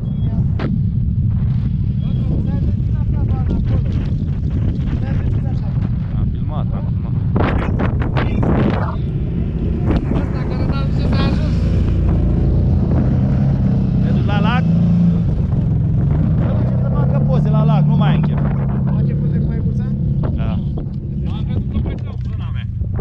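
Wind buffeting the microphone with a dense low rumble, ATV engines running and people talking in the background. A steadier engine hum stands out in the second half.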